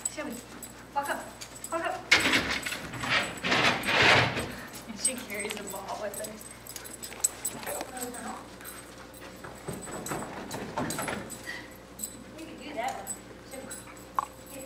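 Siberian huskies vocalizing, with indistinct voices in the room. The loudest part is a noisy stretch from about two to four and a half seconds in.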